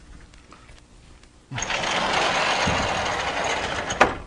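A lecture-hall blackboard scraping and rumbling steadily for about two and a half seconds, starting about one and a half seconds in, as a board is moved or worked on.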